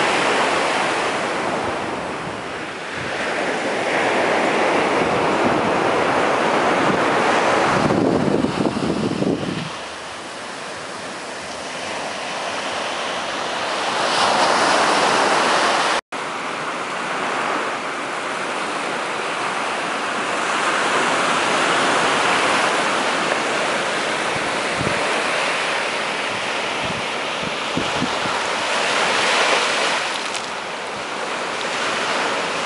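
Small surf breaking and washing up a sandy beach, the wash swelling and easing every few seconds, with wind buffeting the microphone. The sound cuts out for an instant about halfway through.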